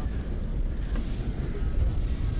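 Wind buffeting the microphone: a steady, low rumble.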